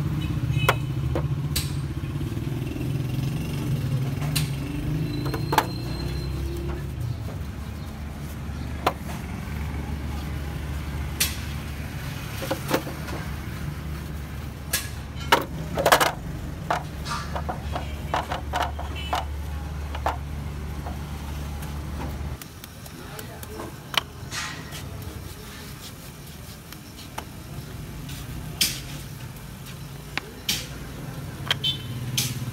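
A steady low engine drone that drops away sharply about two-thirds of the way through, with scattered sharp clicks and knocks over it.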